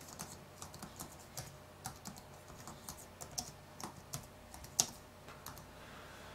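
Typing on a computer keyboard: a quiet run of irregular key clicks as a line of text is entered.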